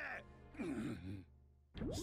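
Anime episode audio: a brief, wordless male vocal sound over background music, fading to a near-quiet moment before a sudden new sound starts near the end.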